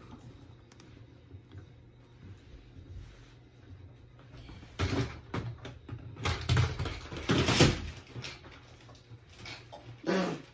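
Handling noise from a ring light on its stand being adjusted: a short cluster of clicks and knocks with rustling about five seconds in, then a longer, louder run of knocks and rustling a second later that fades out before the end.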